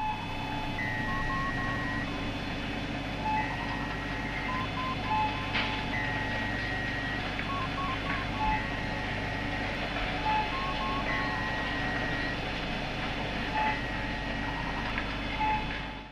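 Sci-fi electronic ambience: a steady low hum with a repeating pattern of computer-style beeps, a longer high beep and a run of short lower bleeps, coming round about every two and a half seconds.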